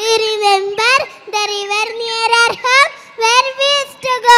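A young girl singing solo into a microphone with no accompaniment, holding long notes and sliding between them in short phrases.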